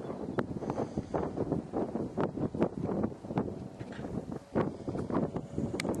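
Wind buffeting the camera microphone on an exposed ridge top: irregular rumbles and crackles with no steady rhythm.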